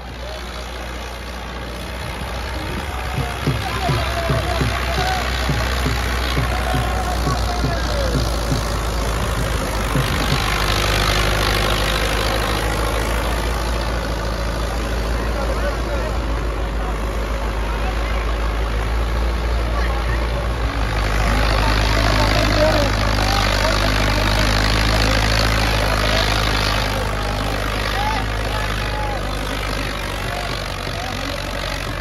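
New Holland 640 diesel tractor engine running hard as it pulls a disc harrow through soil, its steady low note shifting a couple of times. Many voices of a crowd shout and call over it.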